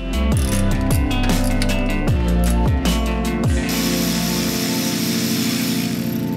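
Cordless electric ratchet backing out the oil pan bolts: several short bursts, each motor spin winding down in pitch with ratchet clicks, then one longer steady run near the end.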